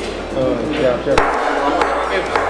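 A judge's wooden gavel struck twice on the bench, about two-thirds of a second apart in the second half. The strikes mark the court session being declared closed.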